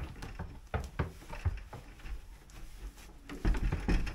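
A paper towel wiping out the inside of a plastic water bucket: scattered short rubs and scrapes, with louder knocks near the end.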